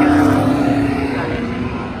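V8 race car passing close by, its engine note loudest at the start, then dropping slightly in pitch and fading as it pulls away.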